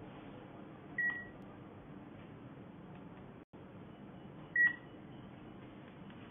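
Variantz iData A25T handheld QR-code scanner and thermometer giving two short high beeps, about three and a half seconds apart, confirming a code scan and a temperature reading.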